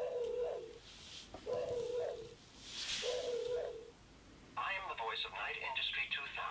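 Sound effects from the Playmobil KITT toy car's built-in speaker, triggered by its touch sensor: three short electronic tones, each rising a little at the end, with a whooshing hiss around the third. Then, about halfway through, KITT's recorded voice starts speaking, thin and tinny through the small speaker.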